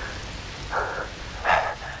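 Steady rain. A short vocal sound comes about midway, and a voice starts speaking near the end.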